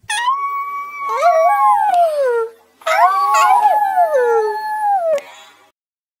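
Several canines howling together in two long bouts, the second starting just under halfway through; the overlapping voices slide down in pitch as each bout ends.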